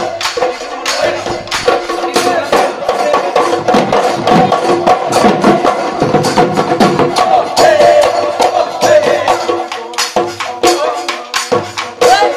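Bihu husori music played live: Assamese dhol drums beaten in a fast, steady rhythm with clicking percussion, and a melody line carried over the beat.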